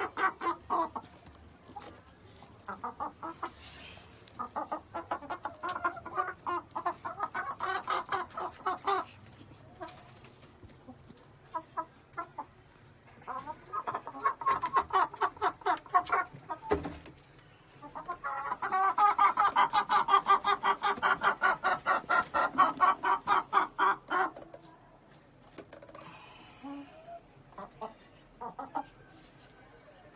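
Giriraja hens clucking in several runs of rapid, repeated clucks, the longest and loudest run in the second half.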